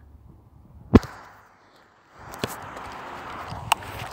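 Phone microphone handling noise: a sharp knock about a second in, then, after a brief lull, steady rustling of clothing against the phone with a couple of lighter clicks.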